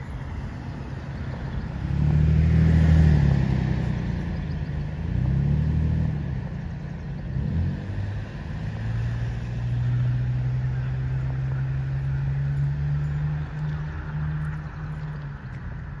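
Motor vehicle engine sound. About two to six seconds in the engine pitch rises and falls twice, loudest about three seconds in, and from about nine seconds an engine runs at a steady speed.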